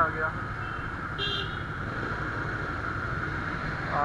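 A motorcycle running through traffic, with wind rushing on the helmet microphone, and a short, high vehicle-horn beep about a second in.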